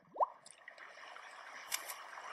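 Film soundtrack of a calm sea: a single short squeak sliding quickly upward about a fifth of a second in, then a faint wash of water with a few small drips and clicks.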